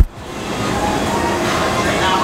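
A short loud thump at the start, then a steady indoor background of low rumble and indistinct voices fading in.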